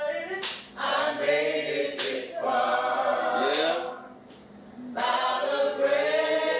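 Voices singing together without instruments, in long held notes, with a short break about four seconds in.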